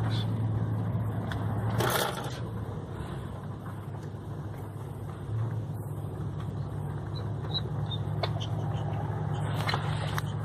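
Steady low engine and road hum heard from inside a car's cabin in slow traffic, with a brief louder burst of noise about two seconds in.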